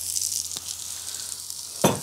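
Onions, nuts and dried fruit sizzling steadily in a hot pan on the stove. There is a faint click about halfway through and a sharper knock near the end.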